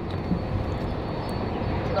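Steady low rumble and hiss of background traffic noise, heard from inside a car waiting at a drive-thru, with a faint steady high whine.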